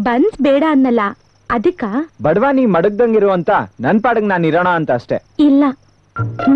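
Film dialogue: people talking, with a steady high cricket chirping in the background.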